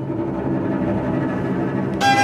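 A string orchestra sustaining a low, steady chord in the lower strings, with little of the high violin sound.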